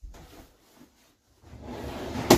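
Wooden slatted couch backrest being shifted by hand, wood rubbing against wood: a short scrape at the start, then a longer rubbing sound building up in the second half.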